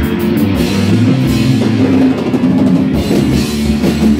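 Rock band playing live: two electric guitars, an electric bass and a drum kit with cymbals, all playing together.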